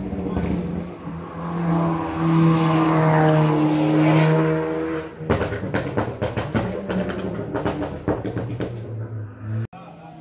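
Rally car engine held at high revs, growing louder as it approaches, then a rapid string of sharp pops and crackles as it comes off the throttle.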